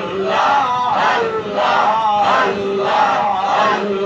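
A crowd of men chanting zikr together, loud and rhythmic, a short phrase repeated over and over in a steady beat.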